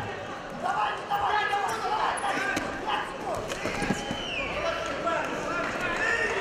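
Voices calling out across a wrestling arena during a freestyle bout, with a dull thud on the mat about four seconds in as the wrestlers go down.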